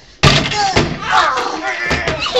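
Wooden door banging twice, a sharp bang about a quarter second in and a second one near the end, with voices between.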